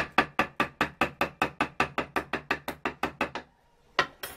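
Ball-peen hammer tapping a thin steel strip held against a bench vise jaw: a steady run of quick, light metal strikes, about five a second, stopping about three and a half seconds in. The strip is being bent to form the folded edge of a sewing-machine hemmer.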